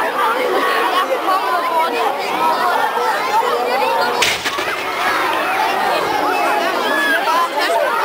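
Crowd of people chattering, with a single sharp distant shot about four seconds in.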